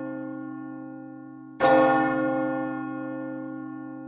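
A bell ringing with a long, slowly fading tone that wavers gently. It is struck again about one and a half seconds in and rings on, dying away.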